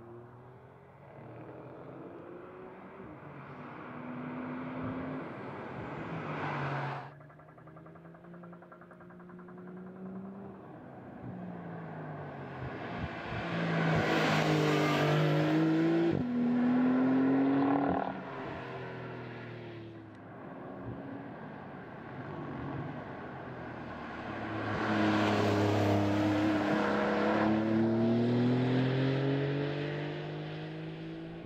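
Porsche 911 Carrera 4S's twin-turbocharged flat-six accelerating and slowing on a race track, its note rising and falling through the gears. It cuts off suddenly about a quarter of the way in, and is loudest as the car passes about halfway through and again near the end, with tyre and wind rush.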